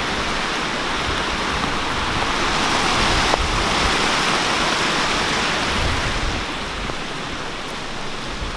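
A small mountain stream rushing, a steady watery hiss that swells louder around the middle and eases off near the end.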